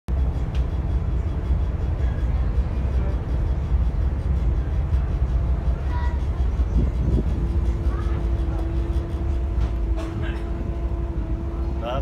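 Passenger ferry's engines running with a steady low drone; a steady higher tone joins about seven seconds in.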